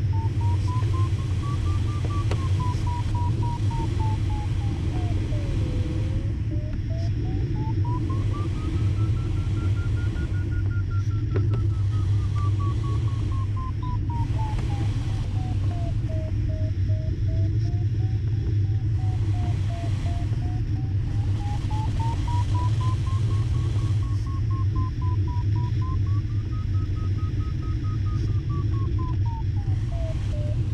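Glider variometer beeping, its tone sliding up and down in pitch as the climb rate changes, over steady airflow noise in the cockpit of a Schempp-Hirth Ventus 2cT sailplane.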